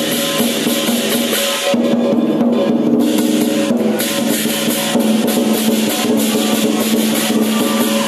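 Southern Chinese lion dance drum beaten in a fast, dense roll, backed by clashing cymbals and a ringing gong. The bright cymbal wash drops away for a couple of seconds about two seconds in, then comes back in full.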